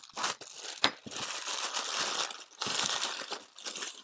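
A craft knife slitting open a thin plastic mailer bag, the bag crinkling and rustling as it is cut and handled in a few uneven stretches with small clicks.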